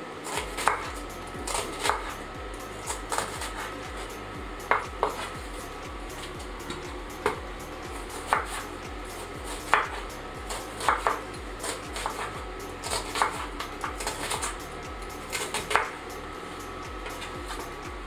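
Chef's knife chopping an onion on a wooden cutting board: sharp knocks of the blade against the board, irregular, roughly one a second.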